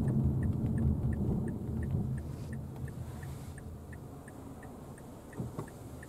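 Turn-signal indicator ticking steadily, a little over twice a second, inside a Mazda Biante's cabin over a low road and engine rumble that fades as the car slows for a turn. There is a brief knock near the end.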